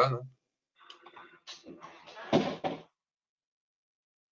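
Scattered, irregular knocking and rustling sounds of movement picked up over a video-call microphone, the loudest a thump about two and a half seconds in. The audio then drops to dead silence.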